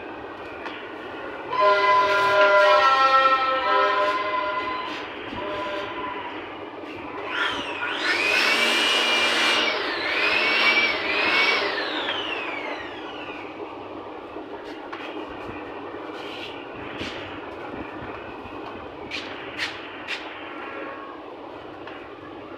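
A horn sounding a chord of steady tones for about three seconds, then a high whistling tone that rises and falls three times, over a steady rumbling background. A few sharp clicks come near the end.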